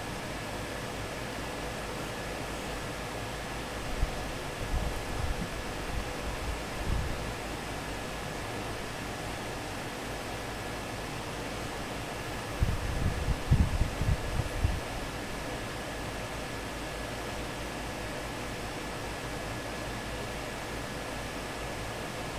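Steady room hiss, fan-like, with a faint high whine running under it. Dull low bumps come about four to seven seconds in and again about thirteen to fifteen seconds in.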